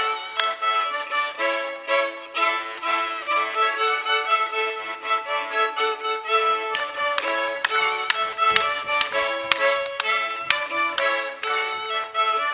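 Fiddle and accordion playing a lively traditional Lithuanian dance tune with a quick, steady beat.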